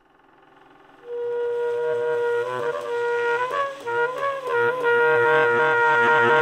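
Tenor saxophone comes in about a second in and holds one long steady note, with shorter notes moving around it, over a low repeating bass figure in a jazz trio.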